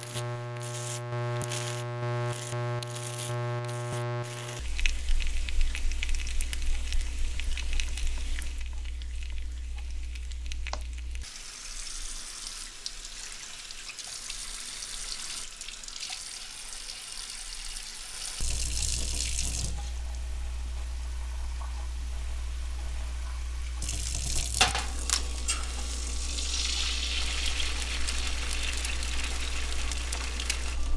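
A sequence of bathroom and kitchen sounds: a steady buzz for the first few seconds, then tap water running into a bathroom sink, then an egg sizzling and crackling in a frying pan near the end.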